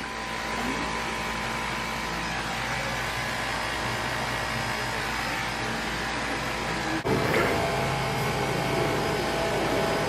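Steady rushing and splashing of water from the pool's bowl fountains pouring into the pool, with a brief break about seven seconds in before it carries on a little louder.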